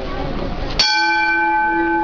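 A metal bell struck once about a second in, then ringing on with several steady, clear tones.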